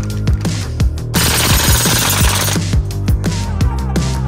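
Background music with a steady beat. About a second in, a full-auto gas-blowback airsoft pistol fires a rapid burst lasting about a second and a half.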